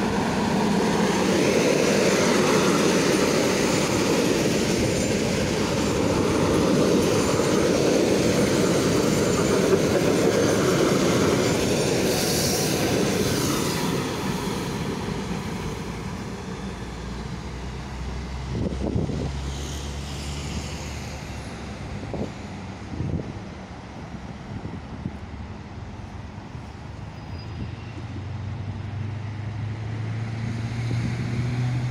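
Electric multiple-unit suburban train rolling past on the rails, its wheels rumbling loudly for about the first half, with a brief high squeal about halfway as the noise begins to fade. After that it is quieter, with a few sharp clicks and a low steady hum near the end.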